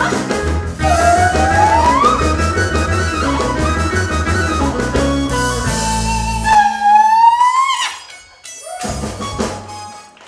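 Live band with bass guitar and drum kit playing, a female singer holding long gliding notes over it, with one long note rising near the end. About eight seconds in the band cuts off suddenly, followed by a few short accented hits.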